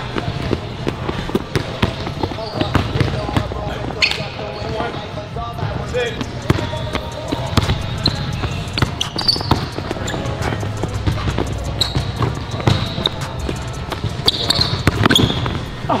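Basketballs bouncing on a hardwood gym floor during dribbling and shooting drills, a continual run of sharp knocks, with brief high squeaks of basketball shoes on the floor now and then.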